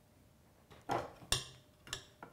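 Three short, sharp clicks and clinks of a drip coffee maker's plastic lid and parts being handled against its glass carafe: one about a second in, one a moment later, and one near the end.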